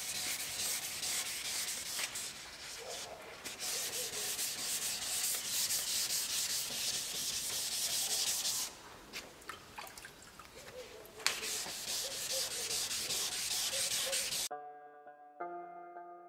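Hand wet-sanding of a car fender's old paint with waterproof sandpaper on a sanding block: steady rubbing strokes that make a hiss. The sanding prepares the paint for primer. The strokes pause about nine seconds in, resume, and give way to background music near the end.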